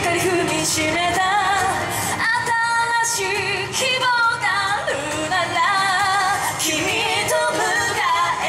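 Female idol group singing live into handheld microphones over loud pop music through stage PA speakers, with one long held note about two and a half seconds in.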